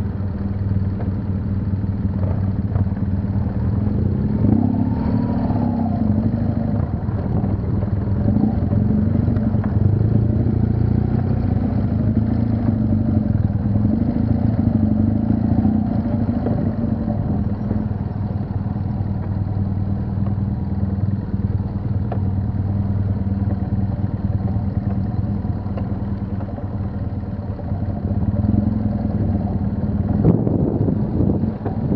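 BMW HP2 Enduro's air/oil-cooled boxer twin running at low, varying revs as the bike picks its way along a rough dirt track, heard close up from a camera on the bike.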